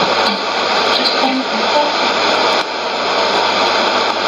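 Shortwave AM reception on a Sony ICF-2001D receiver tuned to 9860 kHz: a steady hiss of static, with a few faint short tones from the broadcast showing through it.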